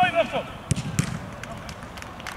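Football being struck, two sharp thuds about a third of a second apart a little under a second in, as a shot goes in on goal.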